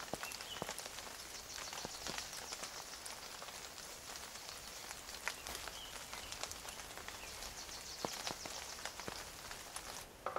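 Quiet forest ambience: scattered water drops falling at irregular moments over a soft steady hiss, with a few faint short high chirps.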